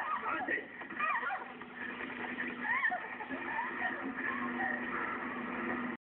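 Women's voices crying out and shouting during a physical struggle, strongest in the first second and a half and again near three seconds in, over a steady sustained hum.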